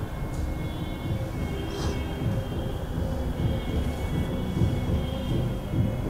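A low, rumbling drone with faint steady high tones above it, from a theatre production's sound score.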